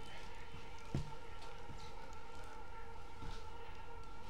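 Steady room hum of several fixed tones, with one dull thump about a second in and a few fainter knocks after it.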